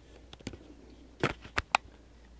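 Handling noise of a phone being set down on a surface: about four short clicks and knocks, the sharpest near the end.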